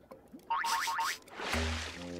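Cartoon soundtrack: a quick run of short sound effects with gliding pitch, then a swelling whoosh leading into a low sustained music chord near the end.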